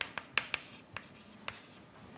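Writing on a lecture board: a handful of short, sharp taps and strokes, about six in two seconds, fairly faint in a small room.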